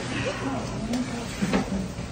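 Women's voices talking quietly in a locker room, with a single sharp knock about one and a half seconds in.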